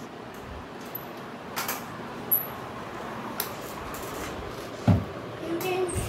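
Plastic wheels of a child's kick scooter rolling on a tiled floor, with a few sharp clicks and one low thump near the end.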